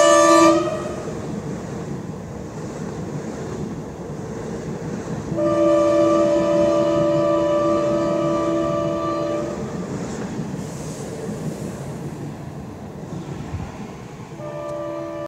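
Hyundai Rotem HRCS2 electric trainset running past with a continuous rumble of wheels on rail. Its horn sounds briefly at the start and again in one long blast of about four seconds from about five seconds in.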